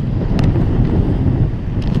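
Strong typhoon wind blowing on the microphone: a loud, steady, low rumble, with rough sea and breaking waves behind it.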